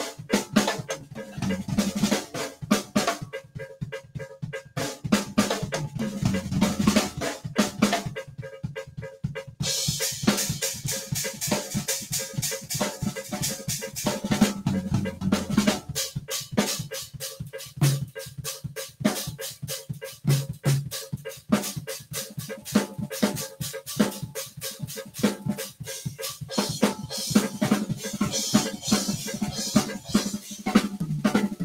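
Mapex drum kit played solo: a dense, continuous run of snare, tom and bass drum strokes, with bright cymbal and hi-hat wash joining about ten seconds in and carrying on to the end.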